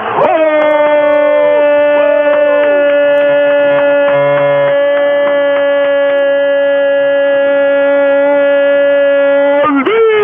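A sports radio announcer's home-run call: one long shouted vowel held on a single steady pitch for about nine and a half seconds, with other voices briefly behind it near the start. It has the narrow, muffled sound of an AM radio broadcast.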